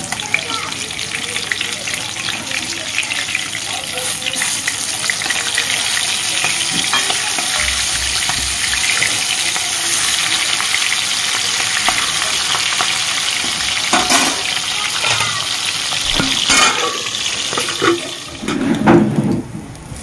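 Pieces of aar fish (a large catfish) frying in hot oil in an aluminium kadai, a steady loud sizzle. A metal spatula turning the pieces scrapes and knocks against the pan a few times.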